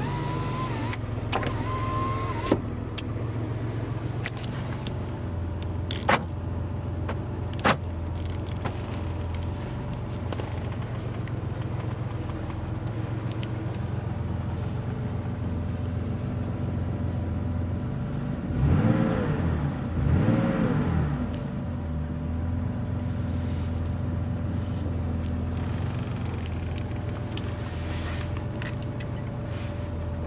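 Porsche 911's air-cooled flat-six idling steadily, heard from inside the cabin, with two quick throttle blips that rise and fall about two-thirds of the way through. An electric window motor whines for the first two seconds or so, and a few sharp clicks come in the first eight seconds.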